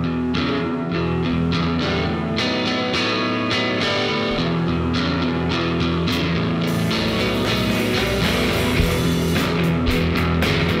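Live rock band playing the instrumental opening of a song: electric guitars and bass guitar with drums. The cymbals fill in and the sound grows busier about seven seconds in.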